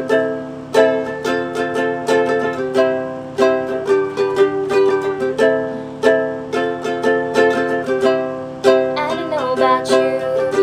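Ukulele strummed in a steady, repeating four-chord progression of C, G, A minor and F. Near the end a woman's singing voice comes in over the strumming.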